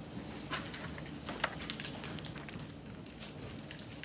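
Quiet classroom with scattered faint rustles and soft clicks as textbook pages are turned, and one sharper click about a second and a half in.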